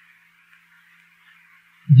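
Faint recording hiss with a low hum during a pause in a man's talk; his voice starts again near the end.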